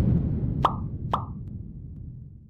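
Two quick cartoon pop sound effects about half a second apart, over the fading low rumble of a preceding whoosh effect. They go with the Subscribe button and thumbs-up graphic popping onto the screen.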